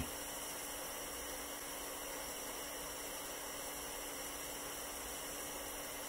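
Butane soldering iron hissing steadily as its hot tip heats a twisted copper wire splice, with a faint low hum under the hiss.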